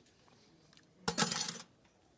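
A short breathy slurp about a second in, lasting about half a second, as white bean puree is tasted off a spoon.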